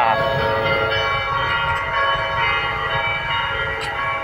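Phú Cường Cathedral's church bells pealing, several bells sounding together in a sustained ring, over the low rumble of passing motorbike traffic.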